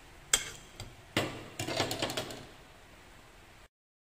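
A metal skimmer knocking against the rim of a clay pot as sweet potato balls are tipped into coconut milk: two sharp knocks about a second apart, then a second or so of softer clattering and splashing.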